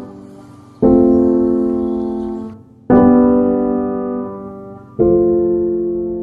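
Background piano music: slow, sustained chords struck about every two seconds, each fading away before the next.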